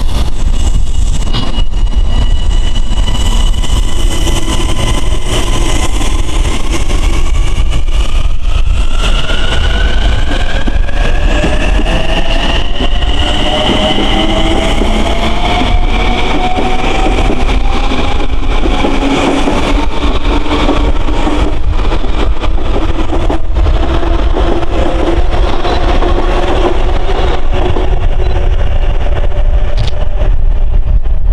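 Long Island Rail Road Kawasaki M9 electric multiple-unit train pulling away. Its traction motors give off a whine of several tones that rise in pitch together as it picks up speed, then level off, over a steady rumble of wheels on the rails.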